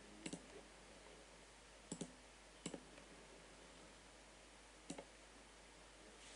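Faint computer mouse clicks, four in all, each a quick pair of ticks, over near-silent room tone.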